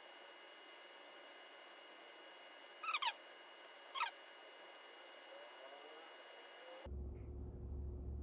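Two short squeaks about a second apart, each falling quickly in pitch, from glassware being handled during a drop-by-drop iodine titration. A faint steady hum lies under them, and a deeper hum sets in near the end.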